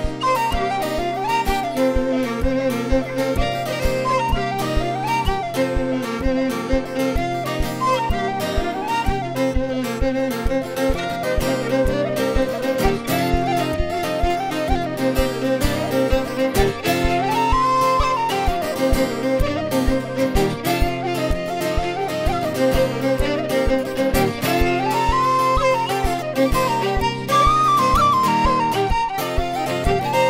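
Irish traditional tune played on tin whistle and fiddle, carrying the melody over a strummed Takamine acoustic guitar at a steady lively pace.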